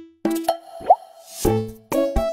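Light, bouncy cartoon background music with a quick rising cartoon 'plop' sound effect a little under a second in, followed by a short rising whoosh as the music picks up again.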